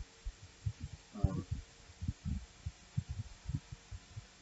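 Soft, irregular low thuds, about three or four a second, over a faint steady hum, with a short spoken 'uh' about a second in.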